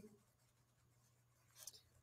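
Near silence with faint pen scratching on a paper workbook page as words are written by hand, and one slightly louder short scratch near the end.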